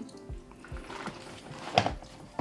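A thin stream of water from a hose trickling slowly into an empty aquarium, falling onto kitchen paper laid over the soil, under faint background music. A short click comes near the end.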